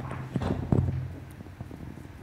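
Microphone handling noise: a few dull thumps and rubbing as a live microphone is handled and fitted, loudest in the first second and then dying away.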